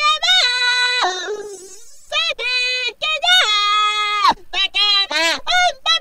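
A human voice pitch-edited in Melodyne, each note snapped to a flat, held pitch that jumps abruptly up or down to the next, giving a high, robotic, autotuned sound. It comes in short phrases broken by brief gaps.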